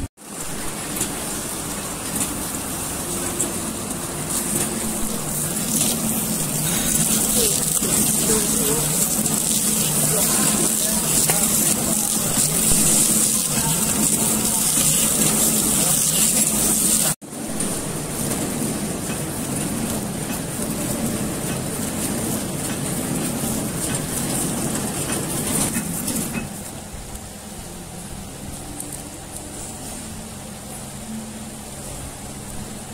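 Horizontal flow-wrapping packing machine running, a steady mechanical noise with a strong high hiss, with workshop voices underneath. The sound cuts out for a moment about 17 seconds in and gets quieter about 26 seconds in.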